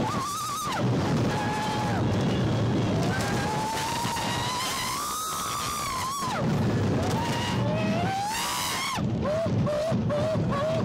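Two young women screaming on a roller coaster: long, high cries that rise and fall and are held for several seconds at a time, over a constant low rumble of the moving ride.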